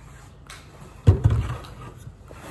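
A single dull thump about a second in, as a plastic toilet-cleaner bottle is set down on a surface, fading within half a second.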